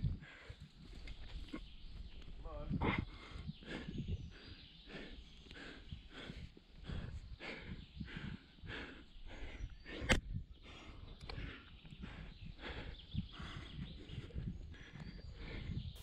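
A rock climber's hard breathing while climbing: short, forceful exhales about once or twice a second, with a brief voiced grunt about three seconds in. A single sharp click about ten seconds in is the loudest moment.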